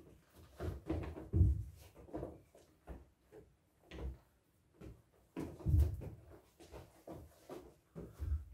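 Irregular dull thumps and taps from hands batting inflated rubber balloons and feet stepping and hopping on a tiled floor, with two heavier thuds, about a second and a half in and near six seconds in.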